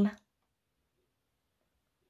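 A woman's voice finishing a word in the first fraction of a second, then near silence.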